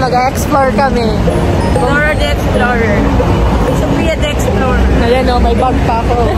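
Street traffic running steadily past, with a bus among the vehicles, under a woman's talking.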